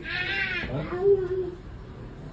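A toddler whining: a high-pitched wail at the start, then lower fussing voice sounds.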